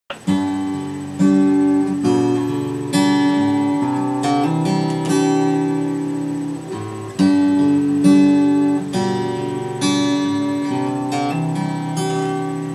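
Acoustic guitar playing a chord intro, a new chord struck roughly every second and left ringing between strokes.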